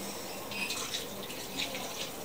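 Juice pouring in a steady stream from a carton into a blender jar.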